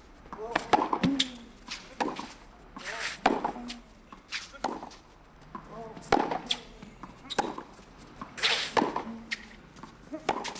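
Tennis rally on a clay court: about seven sharp racket strikes on the ball, a little over a second apart, alternating between the two players, with a short grunt after some of the shots.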